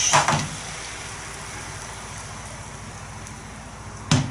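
Thin egg mixture sizzling softly in a nonstick frying pan, a steady hiss that slowly fades, after a brief knock of a metal utensil at the start.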